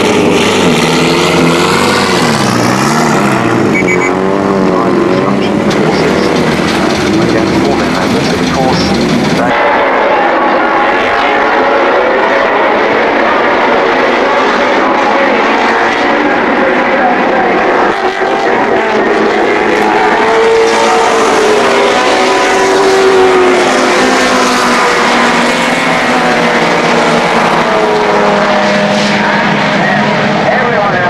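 Ford Escort RS Turbo's turbocharged four-cylinder engine running close by, its pitch rising and falling as it is revved. After a cut about nine and a half seconds in, a pack of touring-car engines revs up and down together as the cars race on the track.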